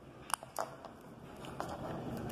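Small handling noises of a felt-tip marker in hand: two sharp clicks about a third and half a second in, then a few fainter ticks.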